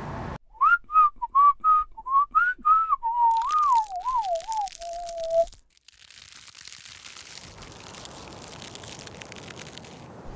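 A person whistling a short tune: a run of quick notes slides into a wavering phrase and ends on one held lower note, then cuts off abruptly. A steady hiss follows.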